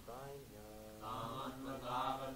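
Male voices chanting a Sanskrit verse in call-and-response recitation, each line sung on a slow, sliding melody. About a second in, the chant grows fuller and louder as more voices take up the line.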